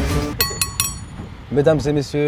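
A table knife tapped three times against a drinking glass, quick bright clinks about a fifth of a second apart, each with a short glassy ring.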